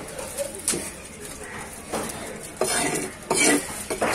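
Heavy cleaver chopping and knocking on a wooden chopping block while cutting trevally into chunks: a sharp knock under a second in, then two longer, noisier bursts of clatter about three seconds in.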